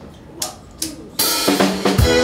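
Two sharp ticks, then about a second in a drum kit crashes in with cymbal, and a piano-and-violin trio starts playing, opening a song.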